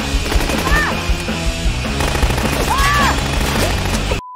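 Automatic gunfire in a long rapid stream of shots under a film music score.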